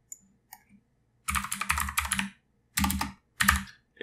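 Computer keyboard typing: a quick run of keystrokes about a second in, then two short bursts of keys.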